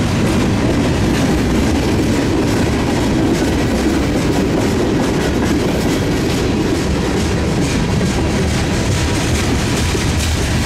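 Freight cars of a mixed freight train (tank cars, then boxcars) rolling past close by: a steady, loud noise of steel wheels on rail, with clicking as the wheels pass over the rail joints.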